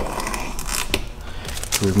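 Masking tape being peeled back at 180 degrees off a freshly laid vinyl tint film, with a few scattered crackling ticks.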